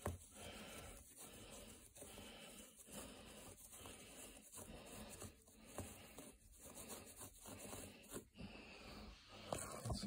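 Gloved hand scrubbing wet carpet pile to work cleaning solution into a paint spot: faint rubbing strokes, about one a second.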